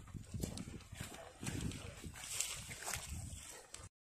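Footsteps of rubber boots walking on a dirt path, a run of soft thuds at walking pace that cuts off suddenly near the end.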